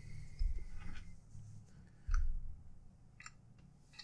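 Handling noise as a paracord bracelet is worked off a paracord jig: a few soft low knocks and light clicks, the loudest knock about two seconds in.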